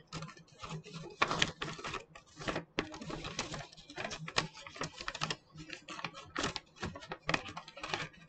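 A sheet of plain white paper being folded and handled: irregular crinkles, rustles and crisp creasing clicks as the flaps are tucked in.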